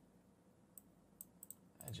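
Faint computer mouse clicks, about five in the second half, over near silence.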